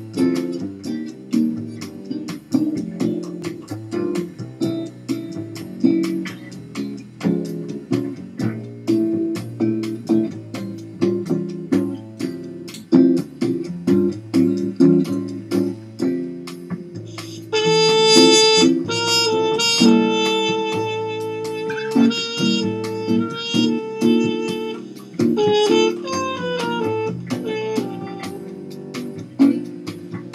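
Bossa nova guitar accompaniment in a gentle rhythm. About seventeen seconds in, a muted cornet enters over it, playing the melody in long held notes.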